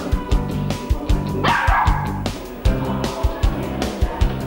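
Background music with a steady beat, over which a golden retriever puppy barks once about a second and a half in.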